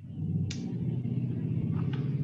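Low, steady rumble of background noise coming through an open microphone on a video call, with a brief hiss about half a second in.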